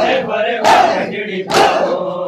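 A crowd of men doing matam: hands slapping chests in unison about once a second, each stroke a sharp crack, under loud massed chanting voices.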